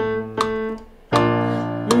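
Electronic keyboard holding a sustained low note, with a steady click beat about two and a half times a second; the note fades and a new one is struck about a second in. A hummed note with vibrato starts right at the end.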